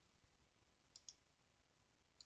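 Near silence, with two faint, short clicks about a second in.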